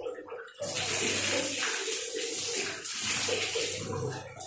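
Water poured from a plastic dipper splashing over a face and falling to the floor, rinsing off soap lather. The pour starts about half a second in and lasts about three seconds.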